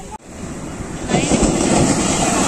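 Sea surf breaking on a sandy shore: after a brief drop-out at the start, the rush of water swells and turns loud about a second in as a wave crashes, with wind on the microphone.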